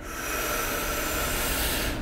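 A man taking one long, steady in-breath, heard as an airy hiss.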